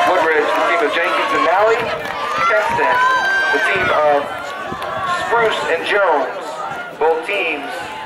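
People talking and calling out close by, with one long drawn-out call about three seconds in.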